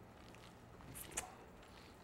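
Faint squelching of hands kneading a wet ground-meat meatloaf mix in a glass bowl, with a couple of brief wet clicks about a second in.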